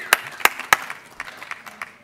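Audience applauding: a sparse scatter of hand claps that thins out and dies away over about a second and a half.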